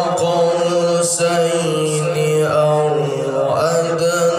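A male qari reciting the Quran in the melodic tilawah style: one long held phrase that bends through ornamented pitch turns in its second half.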